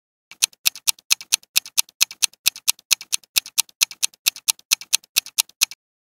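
Countdown timer sound effect of rapid clock-like ticks, about four to five a second with louder and softer ticks alternating, starting a moment in and stopping just before the end.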